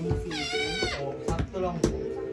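A toddler's high-pitched squeal, about half a second long, over steady music playing in the background.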